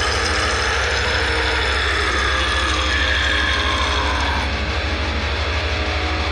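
Heavy metal music: a very fast, even pulsing in the low end under sustained, slowly bending tones.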